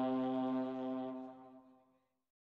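Brass band holding one long, steady chord that fades out to silence near the end.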